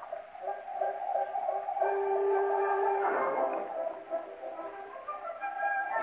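Quiet instrumental background music from an old radio broadcast recording, with a soft woodwind-like melody of long held notes; one note is held for about a second around two seconds in.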